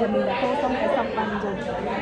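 Speech only: voices talking throughout, with a woman saying "Rồi" near the end.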